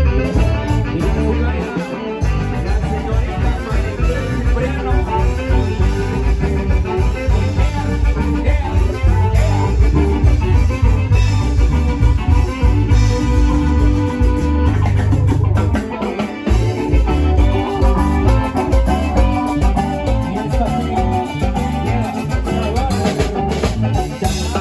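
A live band playing upbeat Latin dance music on electronic keyboard, electric bass and drums, with a steady bass-heavy beat that drops out briefly twice.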